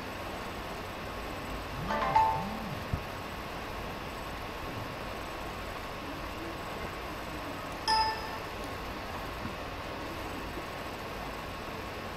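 Quiet room tone: a steady hiss with a faint hum. Two brief pitched sounds break it, one about two seconds in and a short ringing tone about eight seconds in.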